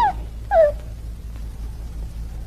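Two short whimpers about half a second apart, each sliding down in pitch, over the steady low hum of an old film soundtrack.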